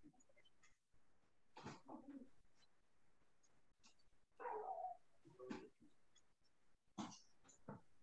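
Near silence on a video call, with a few faint, short sounds scattered through it. The loudest is a brief pitched sound about halfway through.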